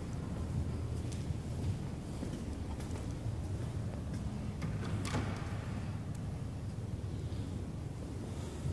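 Steady low rumble of background noise, with a few faint knocks, one about five seconds in.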